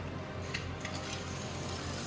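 Quiet room tone: a steady background hiss with a low hum and a couple of faint clicks.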